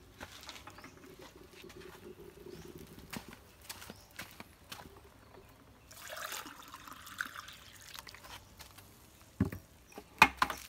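Water poured from a plastic bucket into an upright cup cut from a green bamboo culm, splashing and spilling over onto the ground for about a second and a half starting some six seconds in. A short thump comes near the end.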